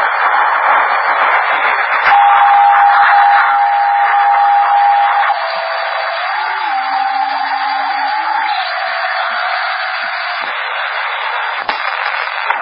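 CB radio receiver tuned to the 27 MHz band during skip propagation, giving a steady, narrow-band hiss of static. A steady whistle sounds from about two seconds in to about five seconds. Then come wavering tones, a higher one with a lower one beneath, which fade out a few seconds before the end.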